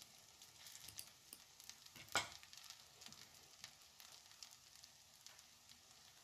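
Cauliflower fritters frying in butter and oil in a nonstick pan: a faint, steady sizzle with many small crackling pops. One sharper click stands out about two seconds in.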